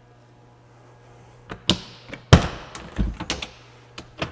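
Ambulance side compartment door being handled: a couple of latch clicks about one and a half seconds in, a loud heavy thunk a little past halfway, then a few more clicks and knocks.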